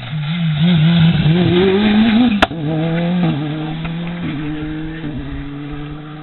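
Rally car engine coming past at speed, revving hard with a wavering, climbing note. About two and a half seconds in there is a single sharp crack as the revs drop at a gear change, then the engine holds a steadier note and fades as the car drives away.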